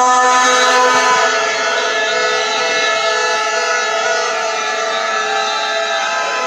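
Loud din of many protest whistles blown at once, a dense mass of overlapping held tones at different pitches, with one lower tone dropping out about a second in.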